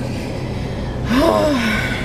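A person's breathy, sigh-like voiced sound about a second in, its pitch rising and then falling, over the steady low hum inside the car.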